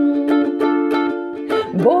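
A woman singing a long held note while strumming a ukulele, her voice sliding up into the next phrase near the end.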